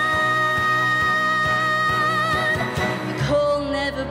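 A woman singing one long held note through a microphone, with vibrato near its end, over backing music. About three seconds in, the note ends and the accompaniment moves to a new, lower chord.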